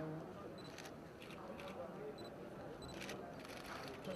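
Camera shutters clicking in scattered runs, several in quick succession, over a low murmur of crowd voices.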